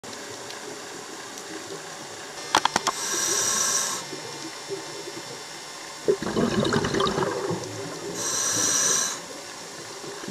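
Scuba diver breathing through a regulator underwater: a hissing inhale about three seconds in and again near the end, with a bubbling exhale in between. A few sharp clicks come just before the first inhale.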